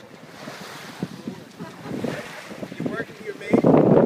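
Wind buffeting the microphone on a sailboat under way, with water rushing along the hull. The wind noise jumps much louder about three and a half seconds in.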